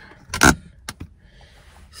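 A phone camera being handled and set in place: a loud rustling bump about half a second in, then two sharp clicks.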